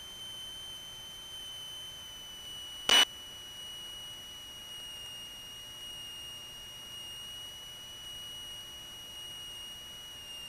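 A steady high-pitched tone with overtones, sinking slowly in pitch, heard in a light aircraft's cockpit audio, with one sharp click about three seconds in.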